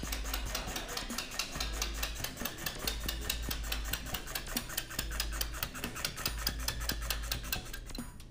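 Channel-letter tab-notching machine punching tabs along the edge of aluminium side stock as the strip is fed through: a rapid, even run of clacks, several a second.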